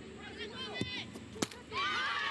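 Players shouting on the pitch, then a sharp thump of a football being struck for a set-piece kick about a second and a half in. Near the end, loud shouting and cheering from many voices breaks out.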